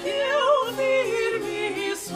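Soprano and mezzo-soprano singing a modinha duet in two parts, both with a wide vibrato, over a basso continuo of spinet and guitar playing sustained bass notes.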